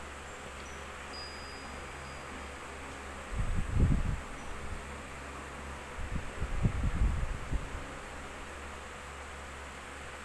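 Pencil writing a word on notebook paper: two short stretches of low scratching and rubbing, one about three and a half seconds in and a longer one from about six to seven and a half seconds, over a steady low hum.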